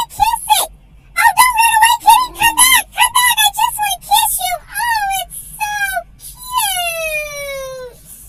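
A dog whining and yelping in a rapid string of high, bending cries, ending in one long falling whine near the end: eager whining at a cat it wants to chase.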